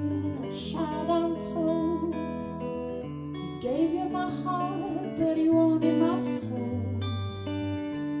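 A woman singing held, wavering notes into a microphone over a live electric guitar accompaniment in a slow folk ballad.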